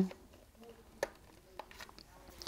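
A single sharp click about a second in, then a few faint ticks: a cable plug being pushed into the socket on the base of a Google Nest Wifi router, over low room tone.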